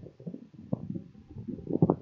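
A muffled, low voice coming through the video call's audio, its words unclear, with a few louder bumps near the end.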